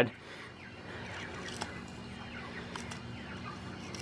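Quiet background between words: a steady low hum with faint bird calls and a few light clicks.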